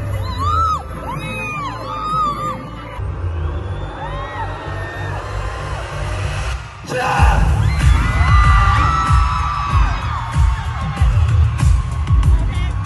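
Live pop concert music through the venue's sound system, recorded from the crowd on a phone, with a heavy, pulsing bass beat. The sound changes abruptly where the footage is cut, about three and seven seconds in.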